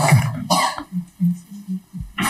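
A person coughs twice in quick succession, then makes a few soft, short voiced murmurs.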